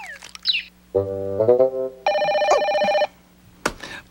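A short musical sting with a falling slide, then a telephone ringing steadily for about a second, followed by a single click near the end.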